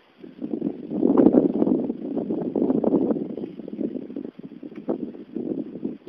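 Wind buffeting the microphone of a camera on a moving bicycle: a gusty low rumble that swells and falls, loudest about a second in.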